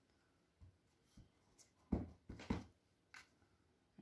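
Faint, scattered taps and clicks from a clear acrylic stamp block being handled, inked and set down on watercolour paper, a little louder twice about two seconds in.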